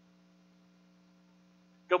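Faint, steady electrical mains hum, a low drone with a few fainter steady tones above it. A man's voice starts a word just at the end.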